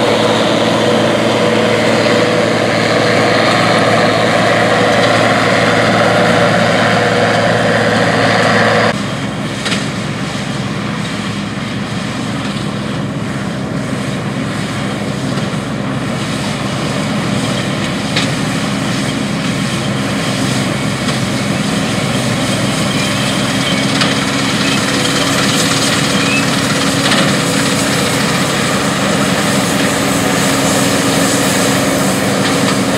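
Deutz-Allis Gleaner L3 combine running under load while harvesting wheat: a steady engine and threshing drone. About nine seconds in it changes abruptly to a quieter, smoother hum with a steady engine tone.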